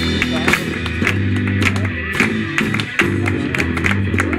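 Live rock band playing an instrumental stretch: electric guitars and bass guitar holding low notes over a drum kit with steady drum and cymbal hits.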